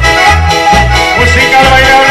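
Live dance band playing: piano accordions carry the melody over an electronic keyboard and a drum kit, with a steady bass beat about three times a second.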